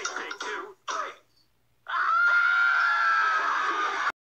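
The last sung words of a line, a short pause, then a single long, harsh scream held at a steady high pitch for about two seconds.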